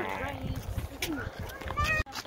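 An upset young girl whining in faint cries, with a short high rising cry near the end, over wind rumble on the microphone.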